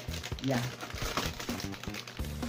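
Cardboard model-kit box and its plastic packaging rustling and crinkling as the box is handled and opened.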